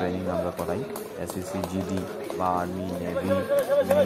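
Several people talking over one another in the open air: overlapping crowd chatter with no single clear voice.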